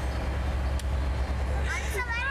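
Steady low rumble of a moving vehicle's interior, heard through a phone microphone; a woman's voice starts again near the end.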